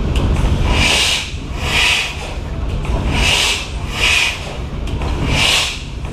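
Fairbanks Morse Model R 80 hp stationary engine running slowly: a steady low rumble with hissing puffs that come in pairs about every two seconds.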